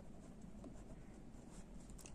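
A pen writing a word by hand on lined notebook paper, with faint scratching strokes.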